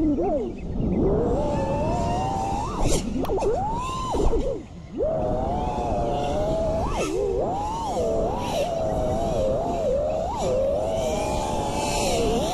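Axis Flying Black Bird V3 1975kv brushless motors on an FPV freestyle quadcopter whining under a dense rushing prop noise, the pitch climbing and falling with each throttle change. About five seconds in the sound briefly drops low as the throttle is cut, then climbs back up.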